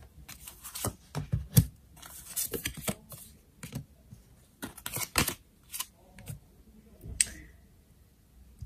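Tarot cards being dealt and laid down on a tabletop one after another: an irregular run of light snaps and taps, with short sliding swishes of card over card and table.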